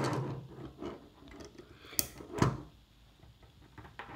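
Ethernet patch cables being handled and their plastic RJ45 plugs pushed into a network switch: a few scattered clicks and knocks, the sharpest about two seconds in, followed by a duller knock.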